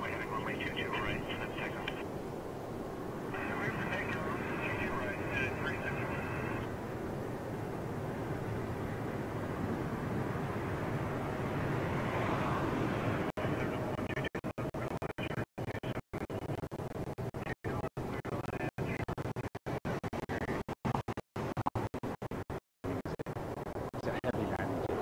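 Twin-engine widebody jet airliner on its takeoff roll, the engine noise building as it moves away down the runway. Air traffic control radio voices come in near the start and again a few seconds later, and the sound drops out in many brief gaps through the second half.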